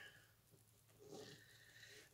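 Near silence, with faint rustling from about a second in as a sling bag is handled and closed.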